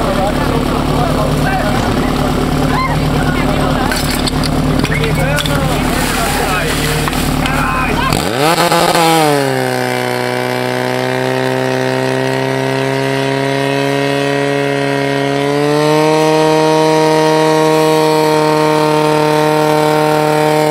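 Portable fire pump engine running. For the first eight seconds it idles under shouting voices. About eight seconds in it revs up and settles into a steady high-speed tone as it works under load pumping water to the hoses, and it rises a little higher about sixteen seconds in.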